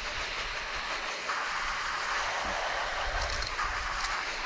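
Garden hose spraying water onto a wet T-shirt on a glass tabletop: a steady hiss and patter that grows stronger about a second in. The shirt is being rinsed to wash the bleach out.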